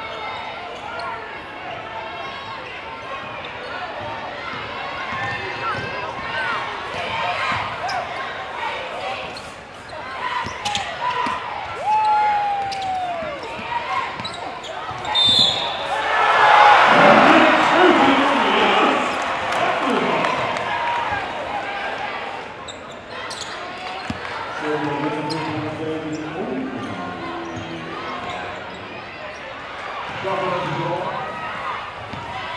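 Live basketball game sound in a crowded gym: a steady hubbub of crowd voices, with a basketball bouncing on the hardwood court. About halfway through, the crowd breaks into a loud cheer lasting several seconds as a shot goes in, then settles back to chatter.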